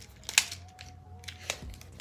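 Small plastic clicks and handling knocks from a Jmary mini tripod's ball head and phone clamp as they are screwed together by hand. The sharpest click comes about a third of a second in, with another about one and a half seconds in.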